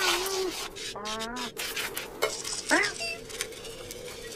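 Cartoon cat claws scrabbling and scraping on ice, broken by four short cat mews and chirps that rise and fall in pitch, the last one the loudest.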